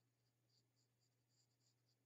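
Near silence, with faint scratches of a pencil sketching lightly on drawing paper.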